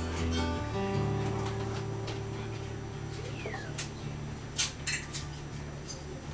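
Acoustic guitar chords strummed and left ringing, fading slowly, with no singing. A few sharp clicks come a little past halfway.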